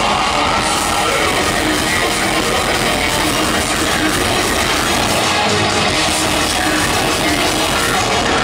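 A heavy metal band playing live at full volume: distorted guitars, bass guitar, keyboard and a dense drum kit, steady and unbroken.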